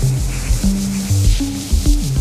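Acid techno played on Roland TB-303 bass synthesizers and a TR-606 drum machine: a repeating bass line of stepping notes with slides between them, over a steady drum beat.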